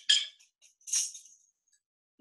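Small metal percussion instruments jingling and clinking as they are handled. There are two short jangles, one right at the start and one about a second in, and the second trails off in a brief high ring.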